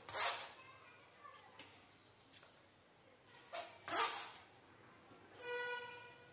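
A steel spoon scrapes and clinks against a steel plate and a mesh sieve as sugar-coated amla pieces are scooped across, in three short bursts, at the start and twice about four seconds in. A brief steady whining tone sounds near the end.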